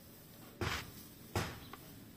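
Hands scooping and stirring a dry potting mix of rice husks, black soil and crushed charcoal in a plastic tub: two short rustles, under a second apart.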